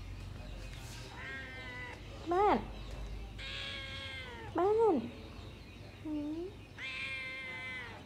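Orange tabby kitten meowing repeatedly, about six meows of varying length; the two loudest are short and rise then fall in pitch, while the longer ones sink gently.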